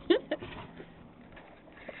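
A short rising vocal sound from a woman right at the start, then faint clicks and quiet handling noise.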